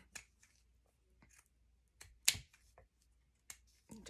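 Pinking shears snipping the edge of a fabric snippet: a few short, sharp snips at irregular intervals, the loudest a little past the middle.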